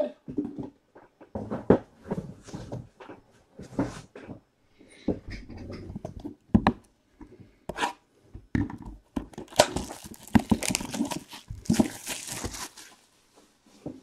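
Trading-card boxes handled on a table, with scattered knocks, taps and scrapes of cardboard. From about nine and a half seconds in comes a few seconds of tearing and crinkling as a box's cardboard outer sleeve is opened.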